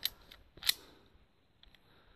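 Two sharp metallic clicks from a shotgun being handled, the second louder, about 0.7 s after the first, followed by a couple of faint ticks.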